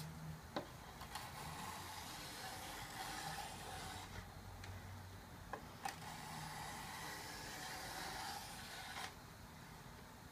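A hand rubbing along a freshly planed wooden wing leading edge, feeling its shape for flats: a faint, long rubbing with a few light clicks.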